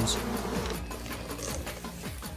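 Hornets and honeybees buzzing in flight, a steady droning of wings.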